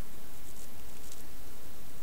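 Steady background hiss of room and recording noise, with no distinct sound events.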